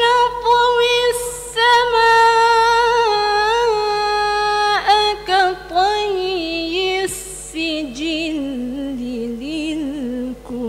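A woman reciting the Quran in tarannum, the melodic competition style, into a microphone. For the first five seconds she holds one long ornamented note, then moves into shorter phrases that step down in pitch.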